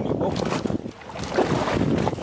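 Wind buffeting the microphone over sea water slapping against a small boat's hull, an uneven rumbling noise that briefly drops away about a second in.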